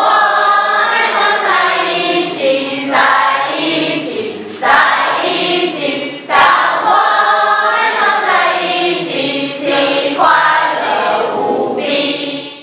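A large group of teenage schoolgirls singing together in chorus, in short phrases that each start strongly every second or two.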